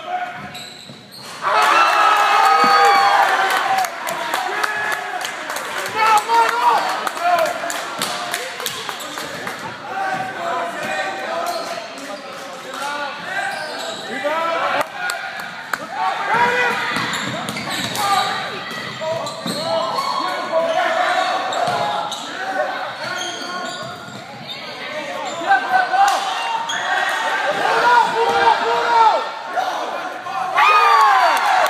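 Basketball game in a gymnasium: many voices shouting and cheering over one another, with a basketball bouncing and thudding on the court, all echoing in the large hall.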